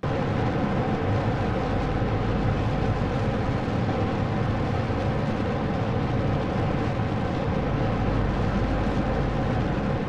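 Simulated spacecraft rocket engine firing a long steady burn for translunar injection: a constant engine noise with a deep low end, starting abruptly and dying away at the end.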